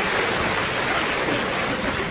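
Live audience applauding steadily, a dense clatter of many hands after a punchline.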